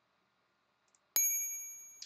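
A single bright electronic ding that starts sharply just past a second in and fades away over under a second: the Hegarty Maths quiz's correct-answer chime as the answer is marked right.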